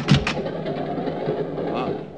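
Radio-drama sound effects: a couple of sharp clicks as a train compartment door opens, then the steady rumble of a moving train.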